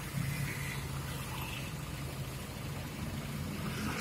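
Car engine idling steadily, heard as a low, even hum.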